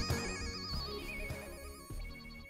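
Electronic instrumental music: a synth lead whose pitch wavers quickly up and down, over bass, fading out as the track ends.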